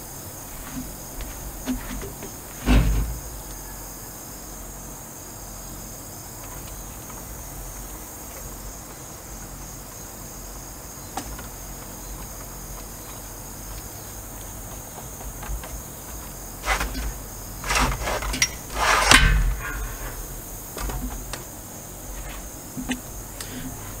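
Suspended cantilever patio umbrella being folded down: its metal frame knocks once about three seconds in, then clatters in a run of louder knocks and rattles a few seconds before the end. Crickets chirr steadily throughout.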